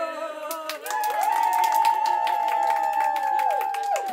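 A few voices hold a long sung or cheered note together for about three seconds over quick clapping, with some voices gliding in and out, then all stop at once.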